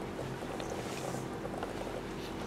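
Steady background noise with a low, even hum and a few faint clicks.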